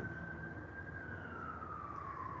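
A faint emergency-vehicle siren wailing, its single tone gliding slowly down in pitch.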